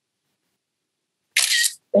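A computer's screenshot camera-shutter sound effect: one short, bright click about one and a half seconds in, after complete silence.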